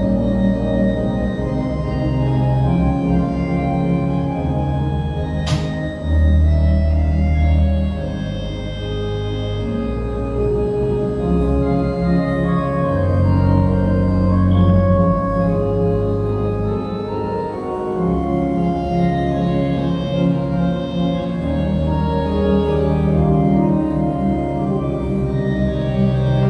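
Four-manual organ playing a slow piece in sustained chords, each manual set to a different voice, with deep pedal bass notes held underneath and changing every second or two. A single sharp click about five and a half seconds in.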